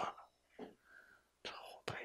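Faint whispered speech from a man, in a few short, soft bits after the end of a spoken word.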